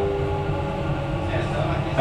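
Dubai Metro train running with a steady low rumble, while a two-note onboard announcement chime rings out and fades. A recorded station announcement voice starts faintly near the end.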